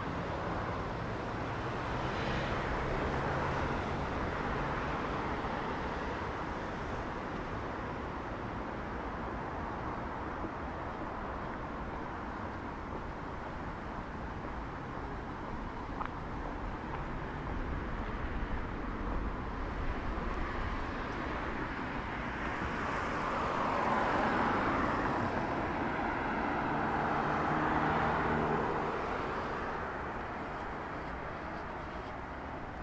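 City street traffic: cars passing on the road, a steady noise that swells and fades as vehicles go by, louder a few seconds in and again in the last third.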